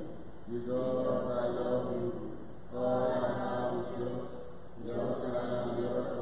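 Liturgical chant: a prayer sung on held, fairly level notes, with a new phrase beginning about every two seconds.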